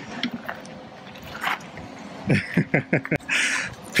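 A person laughing, a quick run of short falling notes about two seconds in, over quiet street background.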